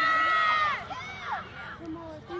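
A high-pitched cheering shout held for most of a second, then quieter scattered shouts and chatter from players and spectators.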